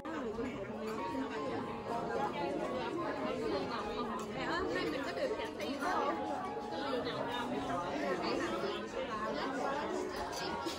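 Several women talking over one another around a table, overlapping conversation with no single voice standing out.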